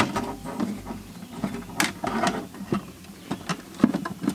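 Cables and plastic connectors being handled and plugged in by hand: irregular rustling and small clicks, with a sharper click a little before two seconds in and another near the end.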